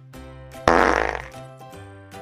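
A sudden loud, fluttering noisy burst about two-thirds of a second in, fading away within about a second, over background music with a steady beat.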